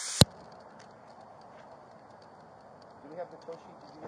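A loud burst of noise cuts off about a quarter second in. Then a body-worn camera microphone picks up a low steady hiss with faint high ticks, and a faint voice about three seconds in.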